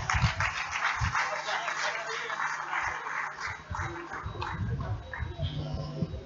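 Audience applauding, the clapping thinning out after about three seconds, with people's voices murmuring underneath.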